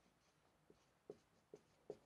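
Marker pen writing on a whiteboard: faint, short strokes, about four of them in the second half.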